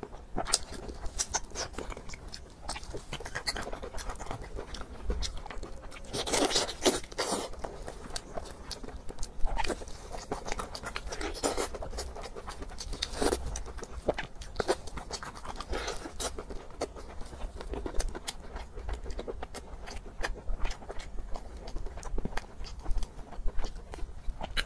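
Close-miked eating: wet chewing and lip-smacking on roast pork, with irregular clicks and a few louder bursts as the meat is torn apart in plastic-gloved hands.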